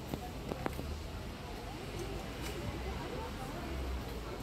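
Busy pedestrian street ambience: indistinct voices of passers-by over a steady low rumble, with a few short clicks about half a second in.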